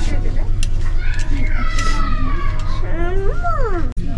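A child's high-pitched, whiny drawn-out vocal calls that glide in pitch, the last one rising and then falling near the end, over a steady low background drone of the store.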